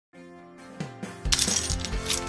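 A bunch of car keys jingling with a bright metallic clinking, over background music whose beat comes in about a second in.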